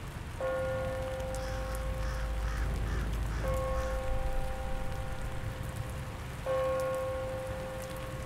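Steady rain ambience with three sustained bell-like tones of the same pitch, each starting suddenly and about three seconds apart.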